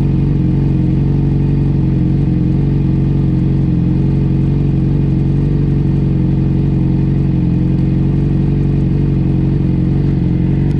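Suzuki GSX-R750 inline-four engine idling steadily, heard close up from the tail of the bike, with no revving.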